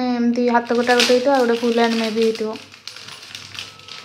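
A voice holds a long, drawn-out tone for about two and a half seconds, then stops. Throughout, the plastic wrapper of a baby clothing pack crinkles and crackles as it is handled and opened, and it is left alone after the voice ends.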